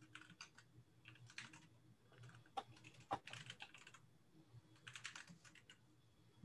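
Faint typing on a computer keyboard: irregular clusters of keystrokes with short pauses between them.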